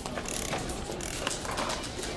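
A dense, irregular clatter of mechanical clicks over a crackling noise.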